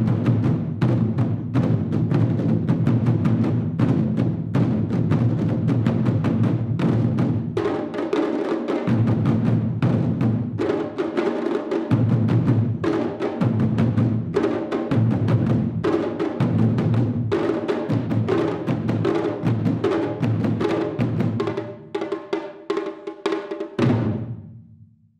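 Taiko ensemble beating a row of barrel-shaped taiko drums with sticks: rapid, dense strokes over a deep booming drum tone. About a third of the way in the playing breaks into accented phrases with short gaps; it quietens near the end and closes on a final strike that rings out.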